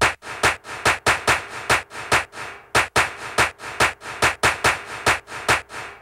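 A bare percussion beat with no melody: sharp, evenly spaced strikes about twice a second with softer ones between.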